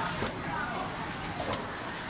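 Busy market hall ambience: a steady background murmur with faint, distant voices and a few light knocks.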